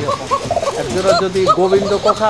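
Fancy pigeon cooing in a quick run of short, arching notes, several a second. It is a cock's courtship coo as he puffs his neck and circles the hen.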